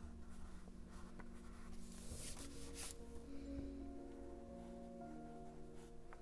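Pen scratching on paper in short strokes while drawing the scalloped edge of a stamp, faint, with the clearest scratches about two to three seconds in. Soft background music with held notes plays under it.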